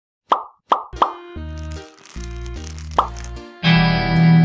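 Three quick cartoon pop sound effects in a row, each rising in pitch, then a short plucked melody over a bass line. Another pop comes about three seconds in, and a full sustained chord starts near the end.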